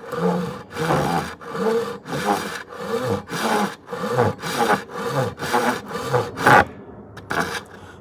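A Japanese pull saw cutting slowly across cocobolo hardwood with its crosscut teeth, in steady rasping strokes about two a second. The strokes stop about a second before the end.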